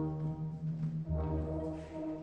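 Opera orchestra playing held chords over a deep bass, a new chord coming in about a second in.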